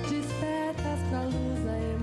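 A woman singing a Brazilian pop song live, backed by acoustic guitar and bass; the bass moves to a new note a little under a second in.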